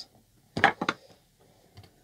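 A screwdriver picked up and knocked against a wooden board and table: a quick cluster of three or four sharp clicks about half a second in, then a faint tick near the end.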